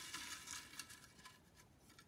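Faint rustling of folded paper slips being handled in a glass bowl, dying away to near silence.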